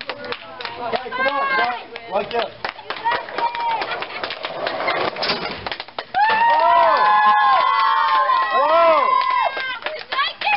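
High-pitched children's voices shouting and cheering without clear words, getting louder and more sustained from about six seconds in, over scattered sharp clicks.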